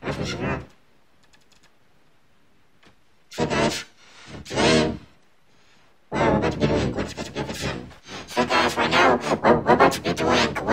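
Heavily processed, layered pitch-shifted ("G major" effect) audio. Three short bursts of voice-like sound in the first five seconds, then dense, continuous voice-like sound from about six seconds in.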